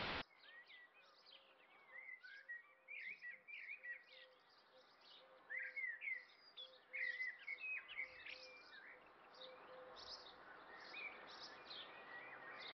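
TV static hiss cuts off a fraction of a second in, then faint birdsong: many short, quick chirps and trills, with a soft low note repeating about twice a second underneath for most of the time.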